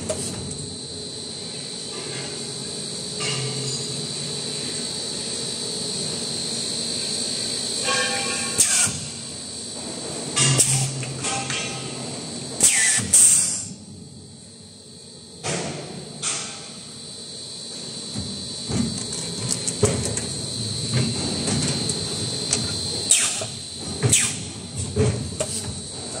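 Injection blow molding machine running through its bottle-making cycle. A steady high-pitched whine is interrupted every few seconds by short, sharp hisses and clicks from its air and clamp action.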